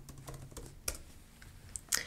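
Typing on a computer keyboard: a quick run of uneven key clicks, with a couple of sharper clicks about halfway and near the end.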